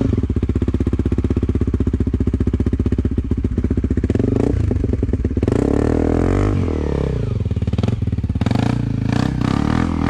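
Dirt bike engines idling with a rapid, steady chugging. From about six seconds in the note rises and shifts as the bike ahead revs and pulls away up the trail.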